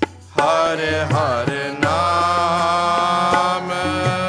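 Sikh kirtan: voices singing a gliding, ornamented devotional line over sustained harmonium tones, with a few tabla strokes. After a brief hush at the very start, the singing comes in and the harmonium holds steady chords beneath it.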